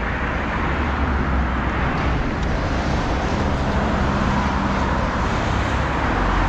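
Steady road traffic noise from cars on wet asphalt, with an engine hum coming through in the middle of the stretch.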